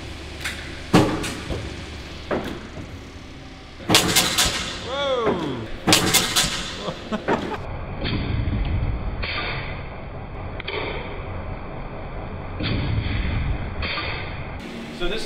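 A four-wheel golf ball launcher in the lab firing: several sharp bangs in the first half, one of them followed by a falling whine. After that the launcher's spinning wheels run with a steady low rumble.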